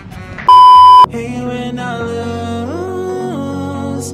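A loud, steady electronic beep lasting about half a second, a pure tone of the kind used as a censor bleep, followed by background music with long held notes.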